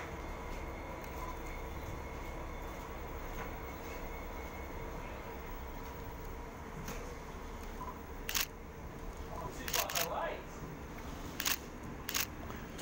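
Steady diesel drone at a railway platform as a NSW TrainLink Xplorer diesel railcar draws in, with a few sharp clicks in the second half.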